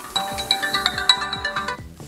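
A mobile phone ringtone, a short bright electronic melody, plays over background music and stops near the end.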